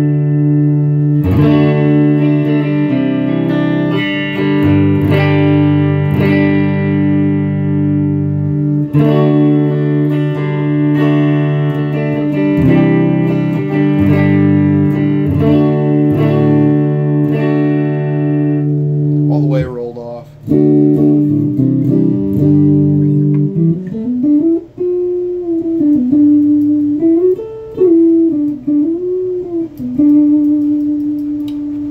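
McLguitars Silverback, a Strat-style electric guitar with three single-coil pickups, played clean through an amp: ringing strummed chords, then a quick falling pitch swoop about two-thirds of the way in, then single notes bent up and down near the end.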